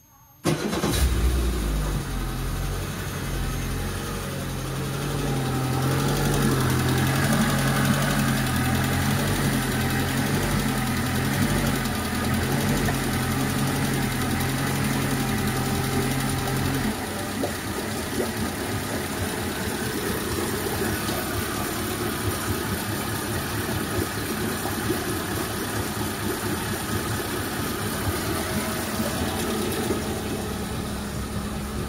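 Suzuki 70 hp four-stroke fuel-injected four-cylinder outboard engine starting about half a second in, then running steadily. About halfway through its deep low hum drops away and it carries on slightly quieter.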